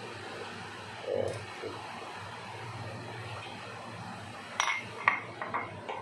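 A metal spoon clinking several times in quick succession near the end, as a little garlic oil is spooned into a carbon-steel wok, over a steady low hum.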